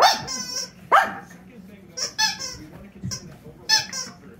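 Small dog giving short, sharp play barks as it jumps at a toy: two strong barks, one right at the start and one about a second in, then a few shorter ones.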